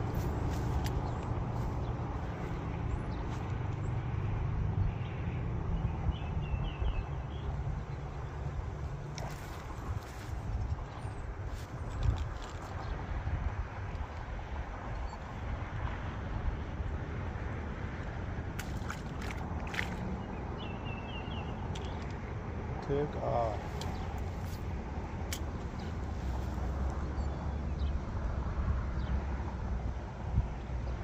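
Steady wind rumble on the microphone by open water, with a few faint bird chirps and occasional small clicks from handling a spinning rod and reel.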